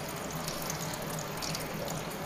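Tap water running steadily, pouring over a wet cat's head and into a plastic mug and tub below.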